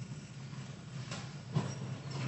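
Pause in speech: faint room tone, a steady low hum, with one brief soft sound about one and a half seconds in.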